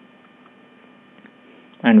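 Faint, steady electrical hum with a light hiss on the recording, as from mains interference in the microphone. A man's voice starts near the end.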